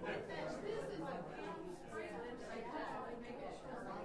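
Indistinct talk: several people chatting, too unclear to make out words.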